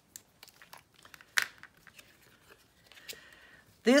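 Cardstock and patterned paper being handled on a tabletop: light taps and rustles as a die-cut oval is picked up, with one sharper click about a second and a half in and a soft brief hiss near the end.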